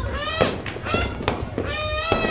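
New Year's firecrackers and fireworks going off, with about three sharp bangs. Several high pitched sounds glide up and down over them.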